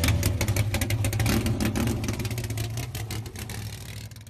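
Car engine running: a steady low rumble with fast pulsing, fading away near the end.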